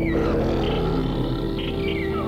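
Ambient electronic music: steady held drone tones over a fast low pulse, with a rough, noisy swell in the first half-second.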